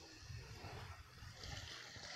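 Faint seaside ambience: an uneven low rumble of wind on the microphone with a soft hiss of small waves at the water's edge, the hiss swelling slightly about one and a half seconds in.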